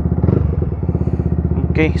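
Yamaha MT-15's 155 cc single-cylinder engine idling steadily with an even pulse, freshly started.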